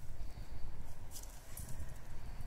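Dogs sniffing and snuffling through long grass, a few short rustling snuffles about a second in and again shortly after, over a steady low rumble on the microphone.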